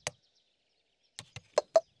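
Knocking on a hollow tree trunk with a flashlight, cartoon-style. There is one knock, a pause of about a second, then four quick knocks, the last two loudest.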